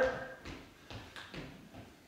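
A few soft taps of feet stepping and shuffling on a hard floor as two people set their feet shoulder-width apart.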